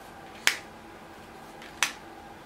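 Spanish playing cards being snapped down one at a time onto a spread of cards: two sharp card snaps, about a second and a half apart.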